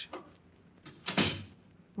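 Radio sound effect of a door being shut, heard once about a second in and dying away quickly.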